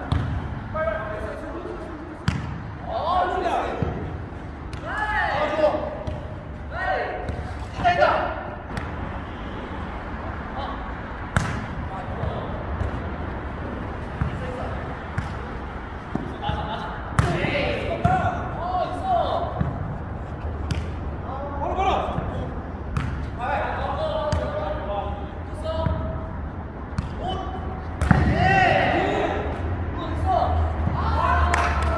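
A jokgu rally: the ball thuds off players' feet and bounces on the artificial turf now and then. Players shout and call to each other throughout.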